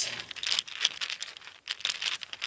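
Rustling and crinkling of a fabric pouch being handled in the hand as small pieces are put back into it, with irregular quick scrapes and clicks.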